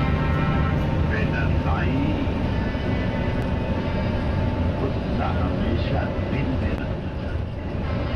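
Intercity coach's engine droning steadily from inside the cab while cruising on the highway, with indistinct voices now and then.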